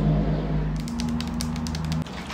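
A quick run of light, sharp taps and clicks starting about a second in, as a toner bottle is handled and tapped by fingernails. A steady low hum sits under them.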